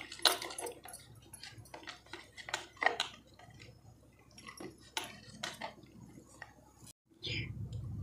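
Plastic spoon stirring powder into water in a plastic bowl: irregular light clicks and scrapes of the spoon against the bowl as the mixture is worked to break up lumps.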